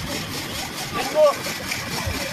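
Hand-cranked ice-shaving machine grinding a block of ice, a steady scraping hiss as the blade shaves ice for a gola.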